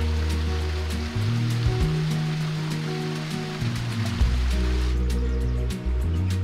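Background music with long, sustained bass notes over the steady rush of a small waterfall trickling down rock; the water sound fades out about five seconds in.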